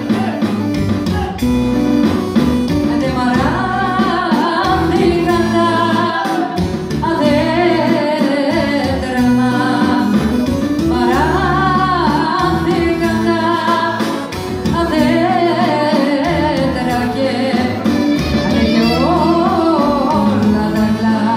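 Live Greek folk music from a band amplified through loudspeakers: a singer or clarinet carrying an ornamented, wavering melody in phrases of a few seconds, over a steady plucked-string and bass accompaniment.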